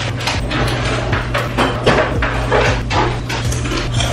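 Irregular household knocks and clatters, as of rummaging for a pair of scissors, over a steady low hum.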